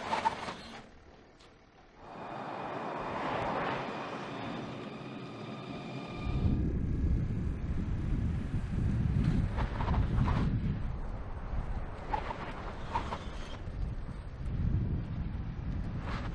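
Mercedes-Benz G-Class SUV driving on a test track: engine and tyre noise, with a heavy low rumble from wind on the microphone starting about six seconds in. A few brief sharp sounds stand out over it.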